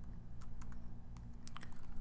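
Light key taps on a computer keyboard: about eight to ten short clicks, some in quick runs, over a low steady hum.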